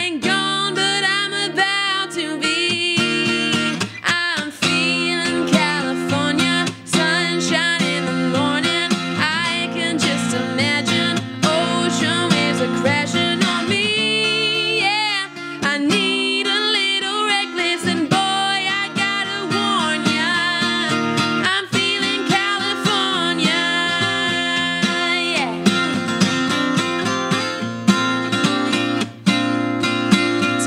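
A woman singing a country song over her own acoustic guitar accompaniment, played live as a solo act.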